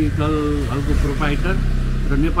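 A man speaking in Nepali to the camera, with a low steady rumble beneath his voice.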